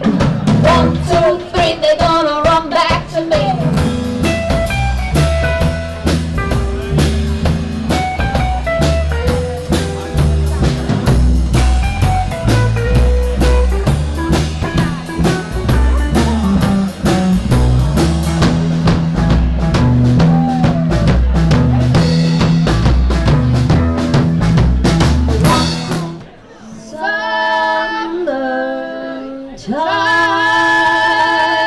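Live blues-rock band playing, with a drum kit, a stepping double-bass line and female singing near the start. About 26 seconds in the band stops and the voices carry on alone in held notes.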